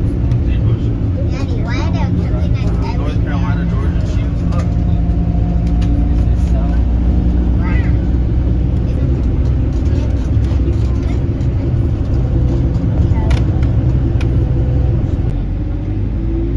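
Engine and road noise of a moving bus heard from inside, a steady low drone, with indistinct voices talking over it, most in the first few seconds.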